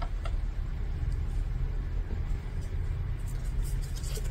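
A steady low rumble of background noise with no speech.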